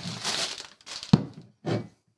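Brown paper bag crinkling and rustling as a bottle is slid out of it, with one sharp knock about a second in.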